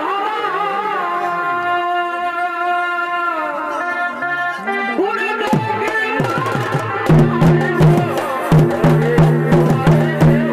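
Live Chhau dance accompaniment: a shehnai plays a held, wavering melody line. About five seconds in, dhol drum strokes join, and from about seven seconds a loud, steady, rhythmic drumbeat takes over.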